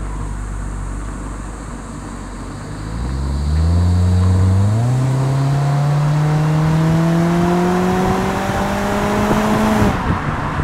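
1954 Triumph TR2's four-cylinder engine running low and steady, then pulling away: its pitch rises about three seconds in, climbs sharply just before five seconds, then keeps rising slowly and steadily as the car accelerates.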